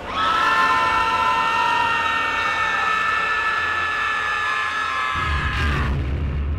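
A cartoon character's high voice holds one long, steady scream. A deep rumble begins near the end.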